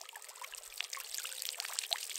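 River water being pushed by a 100 ml syringe through a filter housing, squirting and trickling out in a spatter of small splashes that grows gradually louder.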